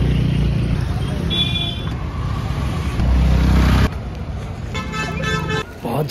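Road traffic going past close by with a loud low rumble that drops away about four seconds in. Two vehicle horn toots: a short high one about one and a half seconds in, and a longer one near five seconds.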